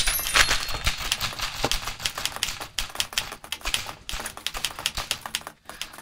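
Typewriter keys struck in a fast, continuous flurry of clicks on a red portable typewriter, stopping shortly before the end.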